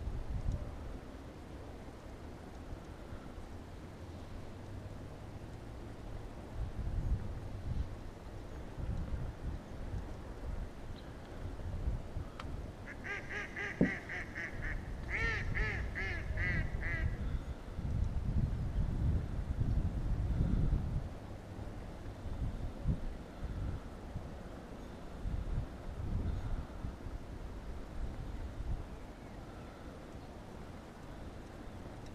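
A waterbird calling in two quick runs of rapidly repeated notes about halfway through, over an uneven low rumble.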